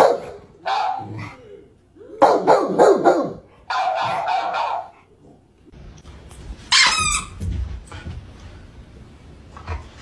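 A Rottweiler barking in several loud bursts through the first five seconds, as played from a TikTok clip, followed by a brief high-pitched sound about seven seconds in.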